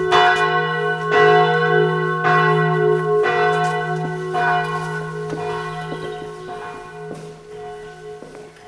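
Church bell ringing, struck about once a second with a lingering hum between strokes, fading gradually toward the end.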